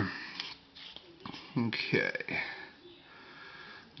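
Small AA LED flashlight being closed up by hand: faint handling noise and light clicks as the tail cap goes back on. A man makes two short, low vocal sounds in the middle.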